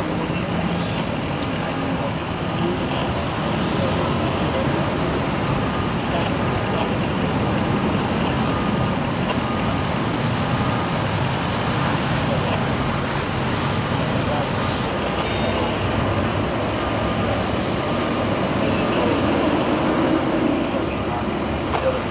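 Steady highway traffic noise from vehicles passing at speed, with indistinct voices under it.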